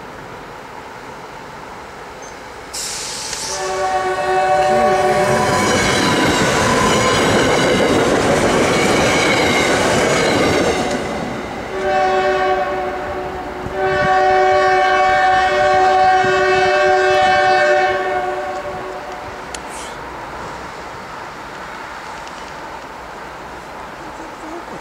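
A SEPTA Silverliner IV electric commuter train passes close, sounding its chord horn as it comes, the rush and wheel clatter of its cars filling the middle seconds. Then a CSX AC44CW freight locomotive sounds its horn, a short blast and then a longer one, as it approaches.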